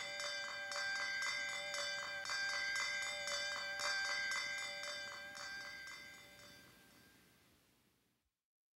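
Closing trailer music: bell-like ringing tones held over a quick, even ticking pulse, fading out to silence over the last few seconds.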